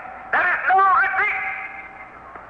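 Speech: a man's voice in one short phrase of about a second, on an old radio recording that sounds narrow-band.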